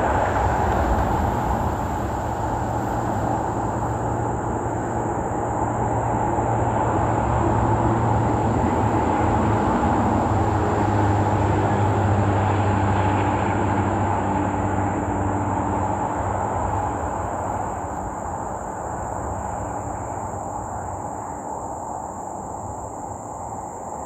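Steady rumble of road and engine noise from a car, easing down over the last several seconds as it slows.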